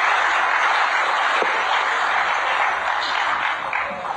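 Large audience applauding, a dense, steady clapping that starts to die down near the end.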